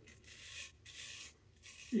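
Palmera straight razor scraping through lather and stubble under the chin: a faint, dry rasp in about three short strokes.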